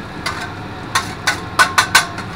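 Two metal griddle spatulas clacking against the steel flat-top griddle: about six sharp metallic clicks, coming quicker and louder in the second second.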